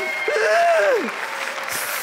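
Studio audience applauding, with one drawn-out vocal cry from a man that rises and then falls in pitch about half a second in.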